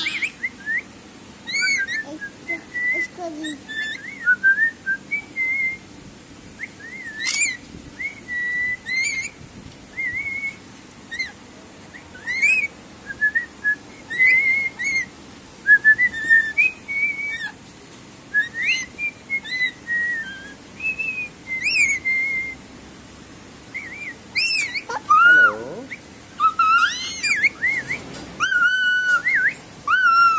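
Pet lories whistling in a cage: a run of short, wavering whistled notes with sharp high chirps between them.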